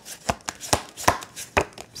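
A deck of tarot cards being shuffled by hand: a run of sharp, irregular card snaps and clicks, about three a second.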